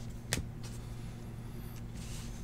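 Trading cards being handled: one sharp click about a third of a second in, then a few faint ticks, over a steady low hum.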